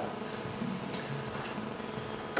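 Steady room noise in a lecture room during a pause in speech: an even low hiss and hum, with one faint tick about a second in.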